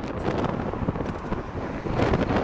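Wind buffeting the microphone: a steady, ragged rushing noise.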